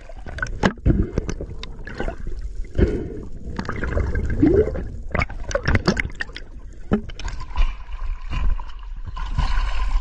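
Water gurgling and sloshing around a camera moving underwater and at the surface, with irregular knocks and splashes. A faint steady tone joins in the last few seconds.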